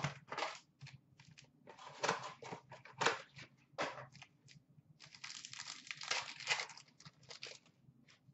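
Trading cards and their packaging being handled: short, soft rustles, crinkles and slides of card stock and wrapper. A longer stretch of continuous rustling comes about five seconds in.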